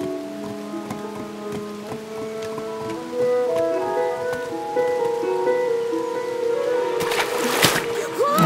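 Background cartoon score: sustained melodic notes that change pitch in steps. A brief rush of noise comes about seven seconds in.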